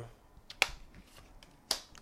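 Tarot cards being shuffled by hand: a few sharp card snaps, the loudest about half a second in and another near the end.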